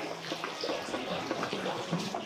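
Steady low splashing of running water from a small courtyard fountain.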